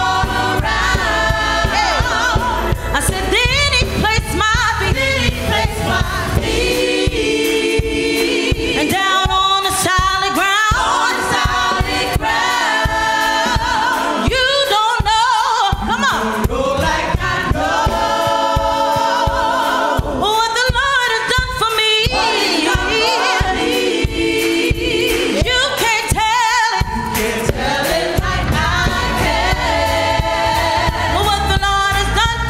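A gospel praise team of several voices singing together in harmony. A low bass layer under the voices drops away about six seconds in and comes back near the end.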